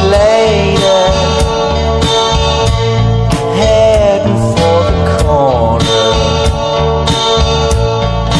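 Lo-fi indie rock song playing: clean electric guitar and a sliding melody line over bass and a steady drum beat.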